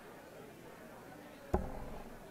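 A single dart striking a Winmau Blade 6 bristle dartboard, one sharp thud about one and a half seconds in, over a low murmur in the hall.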